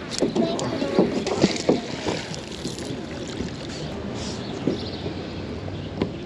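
A magnet-fishing magnet thrown from a boat into a river and hauled back on its rope through the water. A few brief splashy knocks come in the first couple of seconds, followed by a steady watery hiss.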